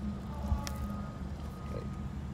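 A pause in conversation filled by a low steady background rumble, with faint thin tones above it and a single click under a second in. A brief spoken "okay" comes near the end.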